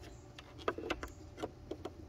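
Several small plastic clicks and taps as a puddle light module is pushed up into its hole in the underside of a truck's side-mirror housing.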